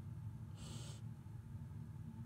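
A short, strained breath from a man doing bench dips, about half a second in, over a steady low hum.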